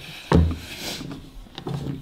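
A single dull thump on a wooden tabletop about a third of a second in, hands coming down on the table during a card trick.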